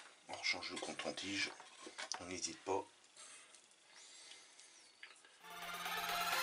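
A man's low, wordless voice sounds, quiet and broken into short bits, for the first few seconds; background electronic music comes in about five and a half seconds in.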